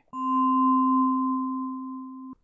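A steady pure tone, a low pitch and a higher one held together, starting just after the narration stops and slowly fading.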